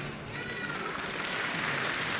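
Floor-exercise music dying away in the first moments, then audience applause growing louder as the routine ends.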